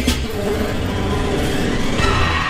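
A loud, rumbling, noise-like sound effect in a dance music mix, filling the gap after a hip-hop beat cuts off at the start. Low beats return near the end as the next piece begins.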